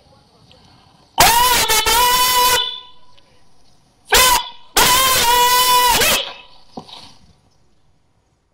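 A parade commander's loud, drawn-out shouted word of command for a salute, in three parts: a long call, a short one, then another long call.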